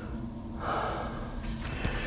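A person's breath close to the microphone: one noisy breath lasting under a second, followed by a few short clicks near the end.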